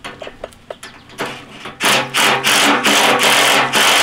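Cordless DeWalt impact driver hammering shackle bolts tight through a tractor bucket lip, run in several loud bursts with short pauses, starting about two seconds in after a few clicks and knocks of tool handling.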